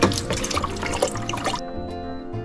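Water poured from a plastic bottle into a steel pot, splashing and gurgling, stopping suddenly about one and a half seconds in. Background music plays under it.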